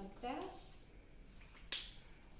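A brief wordless vocal sound near the start, then a single sharp click near the end as a felt-tip marker's cap is snapped shut.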